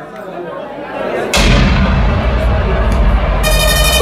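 About a second and a half in, the DJ's sound system comes in suddenly with a loud, bass-heavy blast that keeps going, and near the end a high, buzzy tone joins it.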